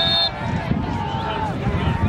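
Several voices of players and spectators calling and shouting over one another on an outdoor football sideline. Right at the start there is a short, high, steady referee's whistle blast.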